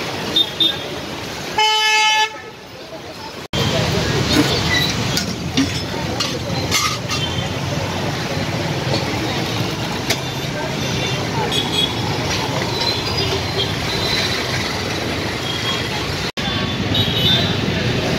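A vehicle horn toots once, briefly, about two seconds in, over steady street noise with people talking in the background.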